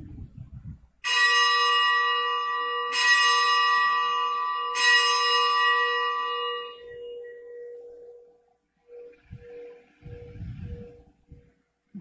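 A bell struck three times, about two seconds apart, each strike ringing on and dying away slowly, its low hum lingering and pulsing near the end. It is the bell rung at the elevation of the chalice right after the consecration at Mass.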